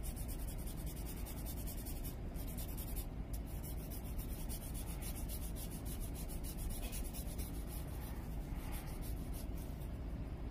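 A blending tool rubbed in quick, closely spaced strokes over colored pencil and graphite on paper: a steady dry scratching as the pigment is blended.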